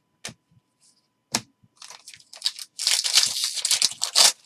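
Two sharp clicks as trading cards are flicked, then, from about two seconds in, the plastic wrapper of a Bowman Draft jumbo pack crinkling as it is torn open, loudest near the end.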